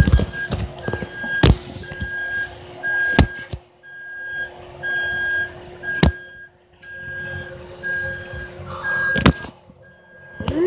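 A car's warning chime beeping steadily about once a second, with a faint steady hum under it. Several sharp knocks and rustling from the phone being handled are the loudest sounds.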